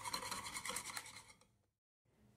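Wire whisk beating a runny egg-and-oil batter in a bowl: a quick scraping and rubbing of the wires against the bowl that fades out and stops about a second and a half in.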